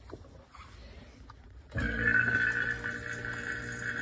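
Low, nearly quiet start, then a little under two seconds in an electric vacuum pump comes on and runs with a steady hum, pulling the solution through a Büchner filter funnel.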